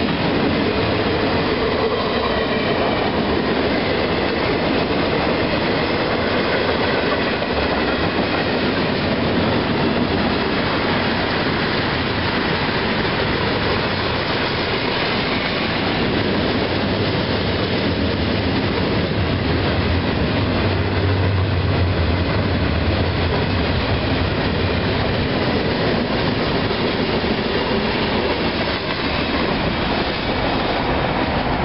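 Freight cars of a CSX mixed freight train rolling steadily past at a grade crossing: a continuous rolling noise of steel wheels on rail.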